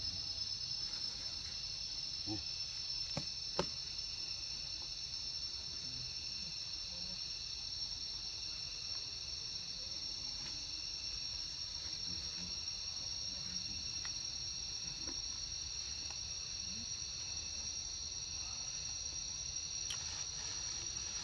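Insects in the forest buzzing in a steady, high-pitched, unbroken drone, with a few faint ticks and one sharp click about three and a half seconds in.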